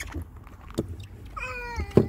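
A short high-pitched cry, about half a second long and nearly level in pitch, near the end, with faint knocks before it and a loud bump at the very end, like a phone being handled.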